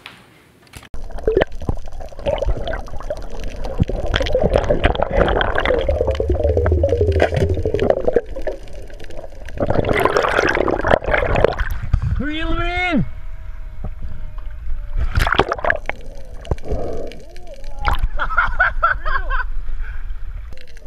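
Water rushing and sloshing around an action camera as it moves underwater and at the sea surface, with excited shouts and whoops from people on the boat; one long wavering yell comes about twelve seconds in and more shouting near the end.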